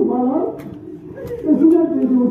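A man's voice chanting a Kashmiri marsiya (mourning elegy) into a microphone, the pitch wavering and gliding in melodic phrases, with a short pause in the middle before the next phrase begins.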